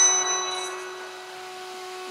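A single steady held tone, fairly low and faint, sounding through a pause in the voice while the echo of the last words fades in the first second.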